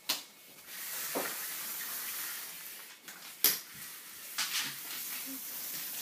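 Small toy doll stroller being pushed over a wooden floor: a faint, steady rustling hiss broken by a few light knocks, the sharpest about three and a half seconds in.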